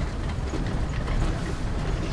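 A vehicle driving slowly over a snow-packed surface, heard from inside the cab: the engine and tyres make a steady low rumble, with faint rattles.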